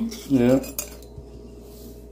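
A heavy pale-green salt shaker with a stainless steel lid set down on a countertop: a short clink a little under a second in, then a faint tap.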